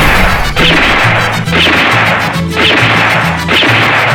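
Four loud crashing hits, about one a second, each fading out before the next, over music with a steady bass line.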